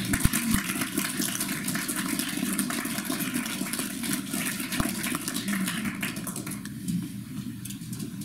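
Audience applauding, the clapping dense at first and thinning out near the end.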